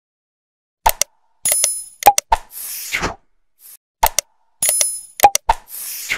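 Subscribe-button animation sound effects, starting about a second in: sharp mouse clicks, a bright ringing bell ding and a whoosh. The same sequence plays twice.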